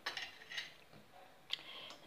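A few light clicks and taps of a kitchen utensil against a stainless-steel mixing bowl, with a sharper click about one and a half seconds in.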